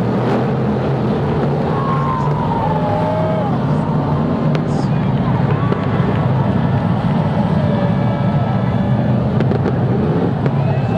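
BriSCA F1 stock cars' V8 engines running steadily as the cars circle the track, with a few faint sharp pops.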